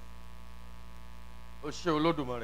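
Steady electrical mains hum. A voice breaks in briefly near the end.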